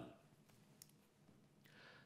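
Near silence between spoken passages, with one faint click a little under a second in and a soft breath-like hiss near the end, just before a man starts speaking.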